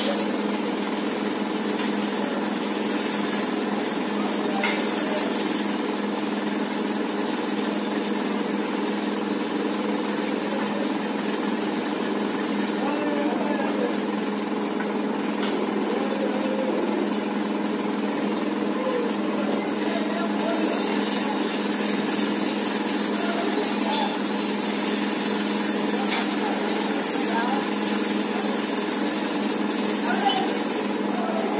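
A steady mechanical hum with a hiss over it, holding level throughout, with faint voices in the background now and then.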